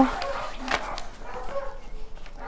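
Paper rustling as loose sheets and a collage are handled, with a single sharp click about three quarters of a second in.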